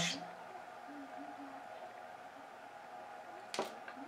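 Quiet workbench room tone with a faint steady hum, and one sharp small click a little before the end as the motor's carbon brushes are handled.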